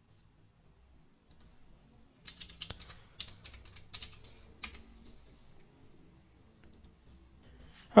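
Computer keyboard typing: a quick run of keystrokes lasting a couple of seconds in the middle, with a few faint clicks before and after.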